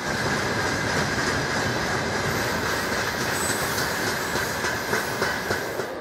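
Freight train wagons rolling past on the rails, a steady dense rumble and clatter of wheels with a faint high squeal from the wheels over it.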